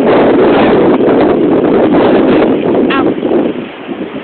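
Strong wind buffeting a phone's built-in microphone: a loud, steady rushing rumble that eases off near the end.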